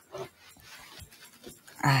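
Soft scraping and squishing of a spoon pushing thick, moist cookie-crumb dough into a plastic-wrap-lined glass bowl, with a few small clicks. Near the end, a short spoken word.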